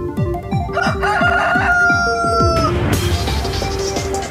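A rooster crowing once, about two seconds long, over electronic intro music with a steady kick-drum beat. A bright cymbal-like wash comes in about three seconds in.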